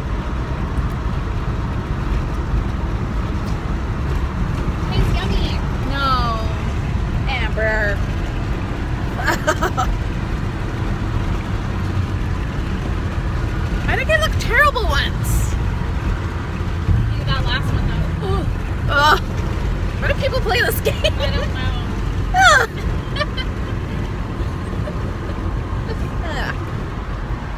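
Steady road and engine rumble inside a moving car's cabin, with brief wordless vocal sounds from the people in it scattered through, the loudest near the end.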